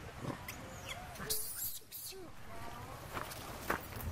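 Macaques calling with short arched and rising squeaks and coos, with a harsh noisy burst about a second and a half in. A few sharp ticks near the end come from the monkeys scampering on dry leaf litter.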